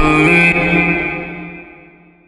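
Slowed-and-reverb rap song: the drums and bass drop out about half a second in, leaving a reverb-drenched held chord that fades away toward the end.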